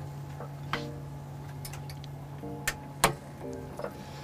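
A few sharp mechanical clicks from the ARED resistance machine as its leverage is adjusted to increase the load, over a steady low hum and faint background music with short plucked notes.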